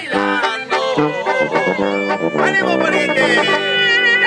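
Mexican banda brass band playing live: sousaphone and brass horns sounding held notes that change in steps, without a pause.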